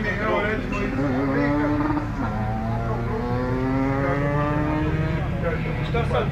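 Motorcycle engine running, with a steady low pulse underneath and an engine note rising slowly for a few seconds through the middle; voices in the background.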